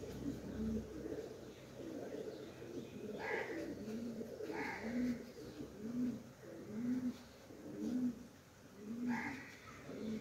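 A pigeon cooing: a repeated series of low coos, about one a second, clearest in the second half.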